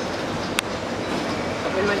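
Busy indoor public-space ambience: a steady wash of crowd noise with indistinct voices, and one sharp click about half a second in.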